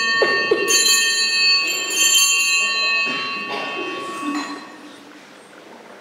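Small altar bells rung in several shakes at the elevation of the host during the consecration. Their high, clear tones ring on between strikes and fade out about five seconds in.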